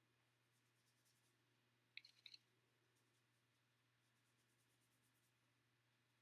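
Near silence: room tone, with a brief cluster of faint clicks about two seconds in.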